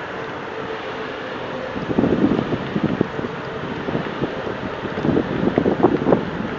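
Wind buffeting the microphone on an open ship's deck at sea, growing rougher and gustier about two seconds in, over a faint steady hum.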